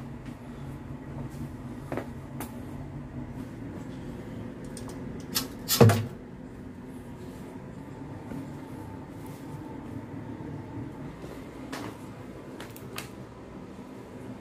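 A few scattered knocks and clicks over a steady low room hum, the loudest a heavy thump just before six seconds in.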